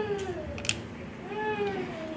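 A baby crying: drawn-out high cries that rise and fall in pitch, two of them, fairly faint. A short sharp click comes between them.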